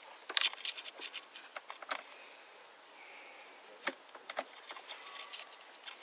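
Irregular sharp clicks and light scraping from handling a digital multimeter and its test probes, with the loudest click just after the start.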